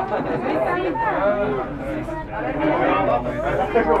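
Several people chattering, their voices overlapping.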